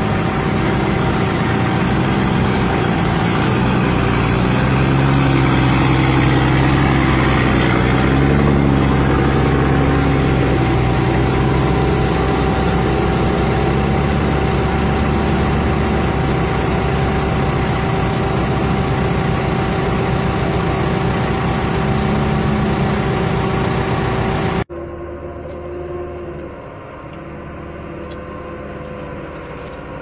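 Heavy truck engine running steadily and loud, with a steady tone over its low rumble. A little before the end the sound cuts abruptly to a quieter, more distant engine.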